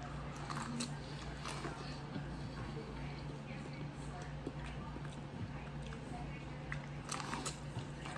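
Biting into and chewing boiled corn on the cob: faint crunching and moist chewing clicks, with another bite about seven seconds in.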